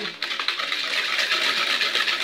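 A wire whisk beating eggs in a plastic bowl: rapid, steady strokes clattering and scraping against the bowl.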